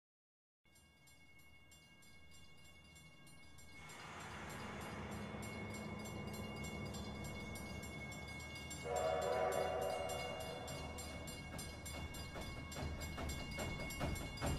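Steam locomotive sound effects at the start of a soundtrack recording: a hiss of steam builds up, a steam whistle blows once for about a second and a half roughly nine seconds in, and rhythmic chugging starts near the end as the music comes in.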